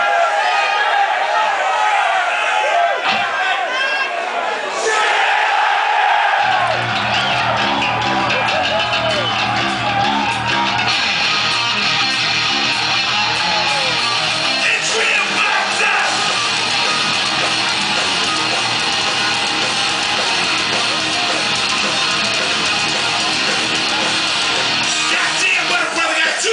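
Live heavy metal band with distorted electric guitars. The guitars play alone at first, then bass and drums come in about six seconds in, and the full band plays on.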